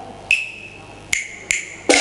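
Cantonese opera percussion: three sharp, high-pitched wooden-sounding strikes spaced under a second apart, each ringing briefly. The accompanying band comes in loudly just before the end.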